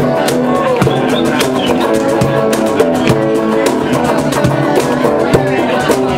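Live band music: an electric guitar playing over repeated hand-slapped cajón strokes.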